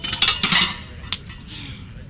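Loaded barbell racked onto the bench-press uprights: a quick cluster of metal clanks and plate rattle, then one more sharp clank a little past a second in.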